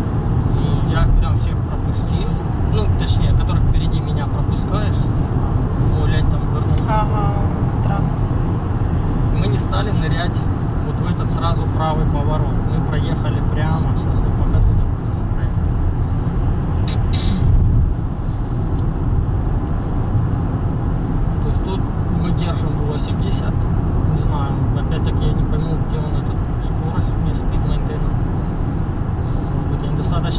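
Car cabin noise while driving at highway speed: a steady low road and engine rumble, with a voice talking at times over it.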